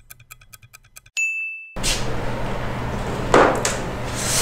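Clock-ticking sound effect, fast and even, ending a little past a second in with a single bright ding that is cut off short. Then room noise with a low hum, and a short thump a little past three seconds in, the loudest sound.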